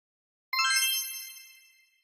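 A bright, sparkly chime sound effect about half a second in: a cluster of high ringing tones struck together that fade out over about a second and a half.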